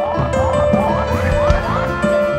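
Live band playing an instrumental passage: a lead line of short rising pitch slides, about three a second, over held keyboard notes, bass and drums.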